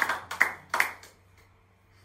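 A few last hand claps from a small audience in the first second, about three claps, dying away to a quiet room with a faint low hum.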